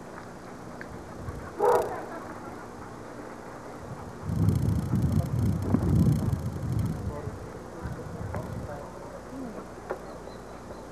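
A dog barks once, short and loud, about two seconds in. A few seconds later comes a stretch of low rumbling noise that lasts two to three seconds.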